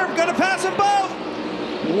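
Mostly a man talking (race commentary), over the steady drone of race cars running on track.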